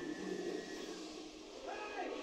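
Film soundtrack playing from a television in the room, with a held tone and a brief sliding sound near the end.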